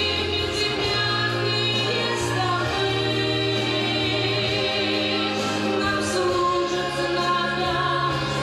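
A woman singing solo into a microphone, holding long notes with vibrato over a sustained instrumental accompaniment.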